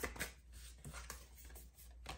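Tarot cards being handled and drawn from the deck: faint papery flicks and rustles, with a few soft clicks near the start and about a second in.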